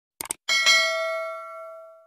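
A quick double mouse-click sound effect, then a bright notification-bell chime that sounds as the cursor clicks the bell icon in a subscribe animation. The chime strikes twice in quick succession and rings on, fading away by the end.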